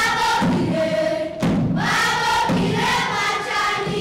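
A group of children singing together in chorus, with a regular low beat underneath about once a second. The singing breaks briefly about a second and a half in, then carries on.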